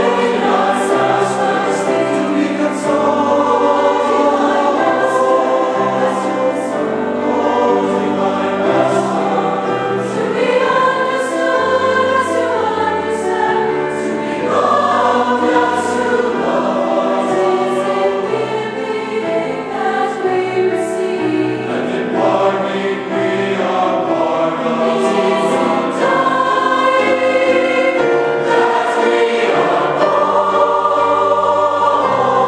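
Mixed choir of youth and adult voices singing a sacred choral anthem in harmony, with notes held and moving together.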